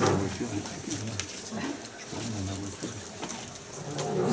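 Low murmur of indistinct voices talking quietly in a hall, with a few light knocks and rustles.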